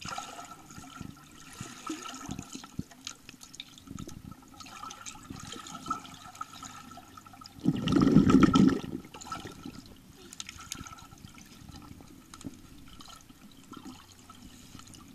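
Water heard by an underwater microphone in a swimming pool: a muffled wash of sloshing and bubbling with small clicks as a swimmer moves close by. About eight seconds in a loud rush of water and bubbles lasts about a second as she dives down.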